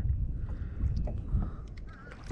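Water lapping against the kayak hulls under a steady low rumble of wind on the microphone, with a few faint clicks near the end.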